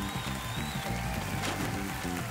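A live worship band playing a short instrumental stretch, with a repeating bass line under held high notes.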